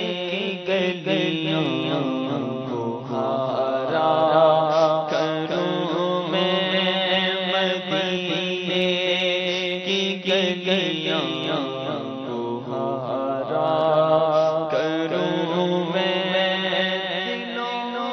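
A man singing an Urdu naat without instruments, in long melismatic lines with vibrato. Beneath the voice runs a steady low drone that steps to a new pitch a few times.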